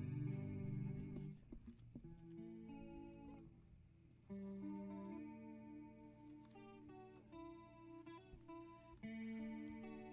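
Electric guitar and piano playing slow instrumental music, held notes and chords, with a brief lull about four seconds in before the playing resumes.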